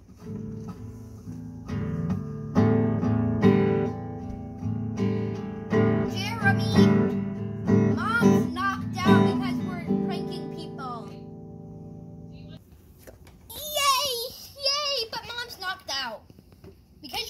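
Acoustic guitar strummed unevenly and clumsily, about a dozen irregular strums with the strings left ringing; the sound cuts off suddenly about twelve and a half seconds in. A child's voice follows near the end.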